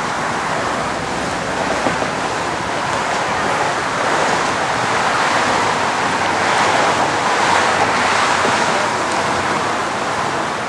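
Steady rushing noise of wind and road traffic, even and unbroken, swelling a little through the middle.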